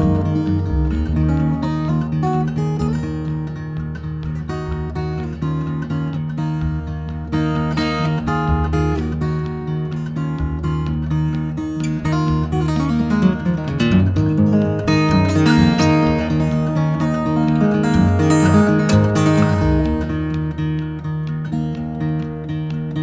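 Solo acoustic guitar playing an instrumental break in a folk ballad, plucked notes over ringing low bass notes, with no singing.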